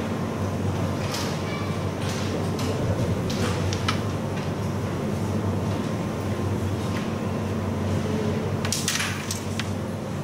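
A steady low electrical hum throughout, with a few faint clicks early on. About nine seconds in, a quick cluster of sharp clicks as a carrom striker is flicked and knocks into the wooden coins on the board.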